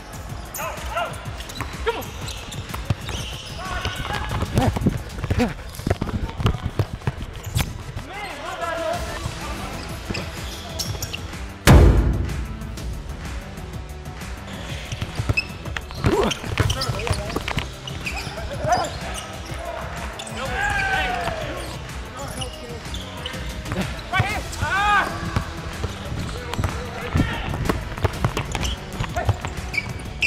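A basketball bouncing and dribbling on a hardwood court, with players' shouts and background music. One loud thump about twelve seconds in.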